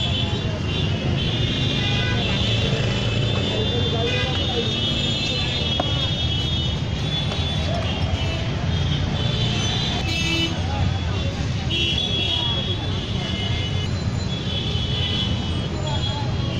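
Busy roadside street noise: a steady low rumble of traffic with horns and voices of passers-by.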